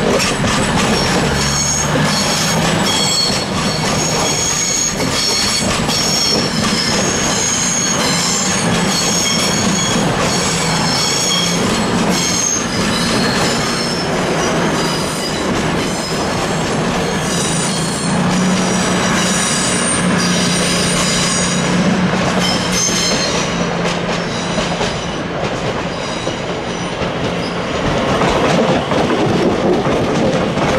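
Two coupled CrossCountry Class 220 Voyager diesel trains pulling away over curved pointwork, their wheels squealing in high steady tones over the rumble and clicking of the wheels over the rail joints. The squeal dies away about three quarters of the way through, and near the end the rumble grows again as a Northern Class 331 electric train comes in.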